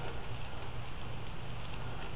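Steady background hiss with a low electrical hum, no distinct events; the hands holding the flange against the skin make no clear sound.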